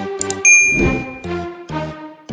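A single bright bell ding, the notification-bell sound effect of a subscribe-button animation, rings out about half a second in and fades within a second. Upbeat background music with a steady beat runs beneath it.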